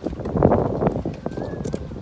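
Footsteps on the planks of a wooden boardwalk: a series of knocks as people walk over the boards.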